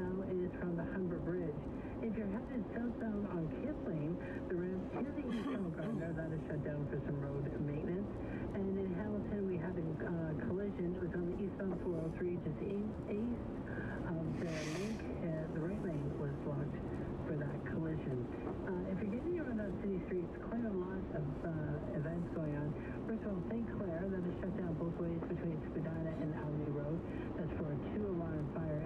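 A voice talking without a break on the car radio, heard inside the car's cabin.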